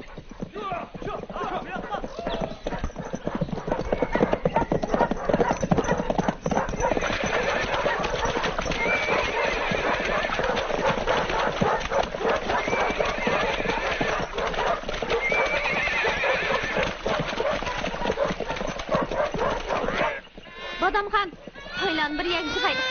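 Horses' hooves clattering in a dense, rapid stream, as of several horses on the move, with a horse neighing now and then; it grows louder partway through.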